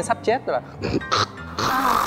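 A man imitating heavy snoring with his voice: several short snores in quick succession, each breaking off sharply.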